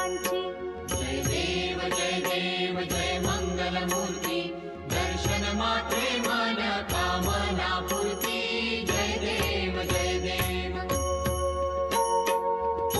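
Devotional aarti singing, a hymn to Ganesh, over a steady drone, with ringing metal percussion struck about twice a second.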